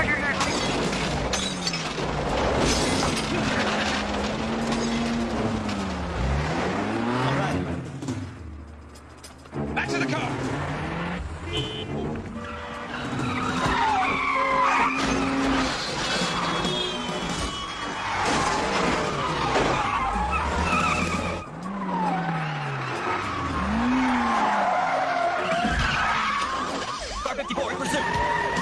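Car-chase soundtrack: car engines revving up and down, with tyre squeals and skids, over a music score. It drops quieter for a moment about eight seconds in.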